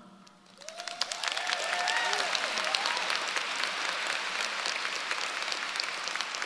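Audience applauding steadily, beginning about half a second in, with a few voices calling out cheers in the first couple of seconds.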